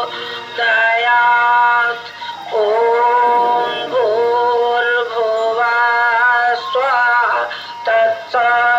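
Hindu devotional aarti singing: a voice holds long, steady notes in phrases of a second or two, with short breaks between phrases and a wavering note near the end.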